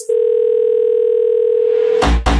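Telephone dial tone sampled into an electro house track: the music cuts out and a single steady tone holds for about two seconds, until the beat comes back in.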